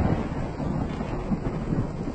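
A steady, wind-like rushing noise, with no voice or tune in it.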